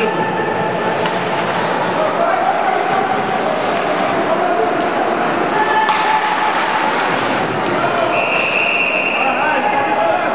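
Ice hockey game in a rink: spectators' indistinct shouting, a couple of sharp knocks, and a steady high referee's whistle held for about a second and a half near the end as play stops at the net.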